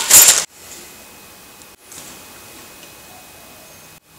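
A brief crinkle of a plastic bag being handled in the first half second, then only a faint steady hiss of room tone.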